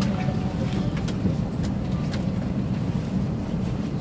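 A steady low rumble with a few faint knocks.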